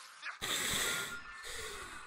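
A man breathing out hard into a close microphone, twice: a loud burst about half a second in, then a shorter, softer one near the end.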